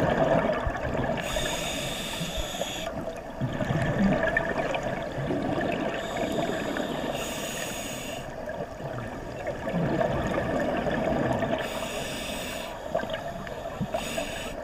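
A scuba diver breathing through a regulator. Each inhalation is a hiss that comes three times, about five seconds apart, and a burbling rush of exhaled bubbles follows each one.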